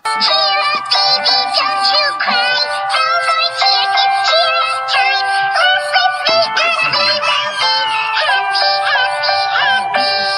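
Electronically altered, synthetic-sounding singing over a music backing, the sung notes wavering up and down.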